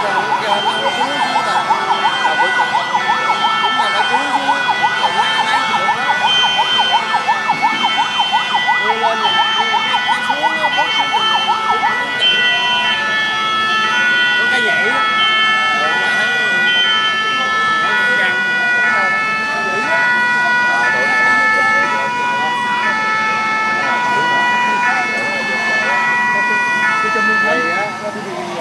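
Emergency vehicle sirens sounding: a fast warbling wail for about the first twelve seconds, then switching to stepped tones that alternate between pitches.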